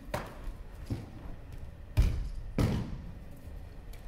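Four thuds on tatami mats, spread over a few seconds; the third is the loudest and deepest, and a fourth follows close behind it.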